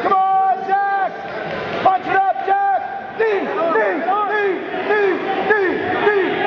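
Men shouting encouragement at a grappling match: one loud voice yells "Come on", then from about halfway several voices yell over one another.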